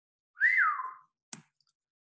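A short whistle, about half a second long, gliding quickly up, holding briefly, then falling away, followed a moment later by a single brief click.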